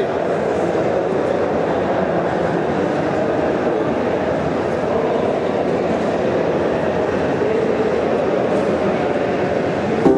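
A steady, dense rushing noise texture played in a live electronic remix, cutting off abruptly into a pitched music passage at the end.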